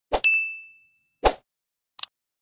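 Sound effects for an animated subscribe button: a sharp knock, then a single bright ding that rings out for about half a second, a second knock a little after a second in, and a short click at the end.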